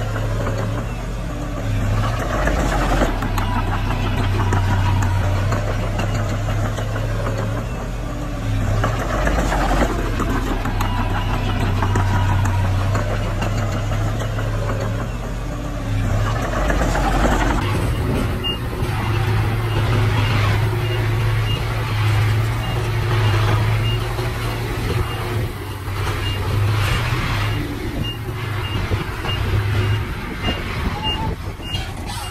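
Mini crawler bulldozer's diesel engine running under load as it pushes soil. About two-thirds of the way in, a dump truck's engine takes over, with a reverse-warning beeper sounding in a steady series of short high beeps as the truck backs up.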